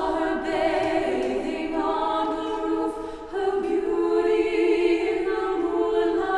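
Mixed chamber choir singing unaccompanied in sustained wordless chords, easing off briefly past the middle before the voices swell into a new chord.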